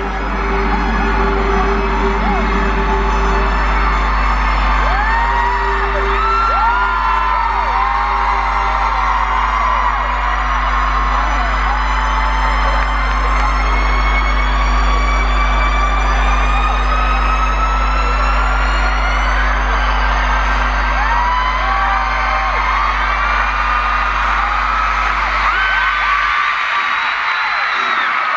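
Arena concert intro music: a deep, sustained synth drone with high tones that rise slowly. A crowd screams and whoops over it throughout. The deep drone cuts out near the end.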